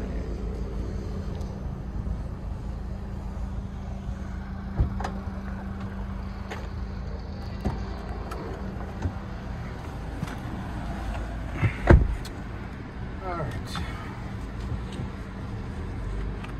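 Handling of an Infiniti QX50's doors: a few light clicks and knocks, then the driver's door shutting with a solid thud about twelve seconds in, the loudest sound, over a steady low hum.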